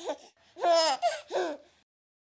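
A baby laughing in three or four short giggles, each falling in pitch, stopping near the end.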